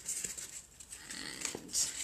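Scissors snipping through a cardboard egg carton: a few short, separate cuts.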